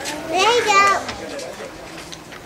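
A young child's voice: one brief high-pitched call about half a second in, then low room noise.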